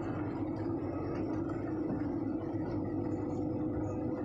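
Steady engine and road noise heard inside a manual car's cabin: an even low hum with a faint steady tone above it.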